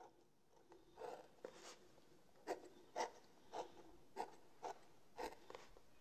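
Pen scratching on a paper notepad as characters are written by hand: a faint series of short strokes, about one or two a second.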